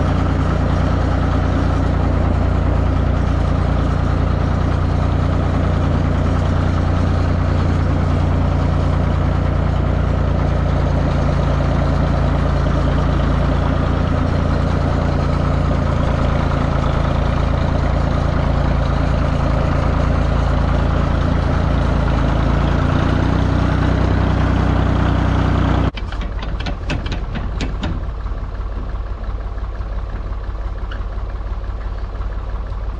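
John Deere 820 tractor engine running steadily under the camera while it tows a New Idea 551 square baler. About four seconds before the end the sound cuts suddenly to a quieter engine with sharp clicking as the baler's bale-tension cranks are turned by hand.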